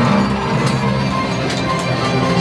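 Orchestral ride soundtrack music playing loudly with held notes over a deep low rumble, with a few short sharp hits about two-thirds of a second and a second and a half in.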